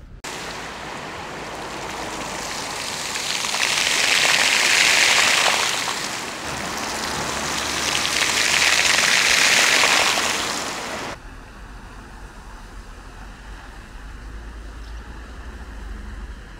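Town-square fountain jets splashing into their basin, the spray swelling louder twice. About eleven seconds in, the sound drops suddenly to a fainter, steady splashing.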